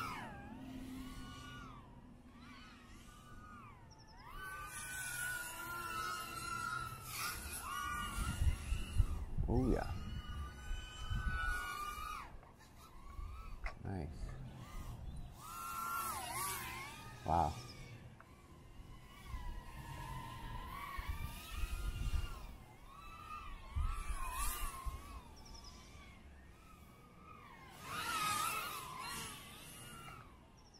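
Small brushless FPV whoop drone's motors and propellers whining in flight. The pitch keeps rising and falling as the throttle is worked, with a few sharp high surges and some low rumbling in between.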